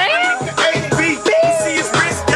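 Hip hop beat playing loud, with a low bass line and a melody of short sliding high notes, while a rapper raps over it.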